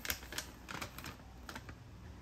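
Plastic bag of tteokbokki rice cakes crinkling and crackling as it is handled and tipped, with the rice cakes shifting inside it: a run of irregular sharp clicks.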